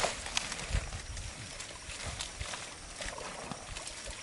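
Water sloshing and splashing with the rustle of dense floating water plants being pulled and pushed aside by people wading in them, as irregular small knocks and low thumps.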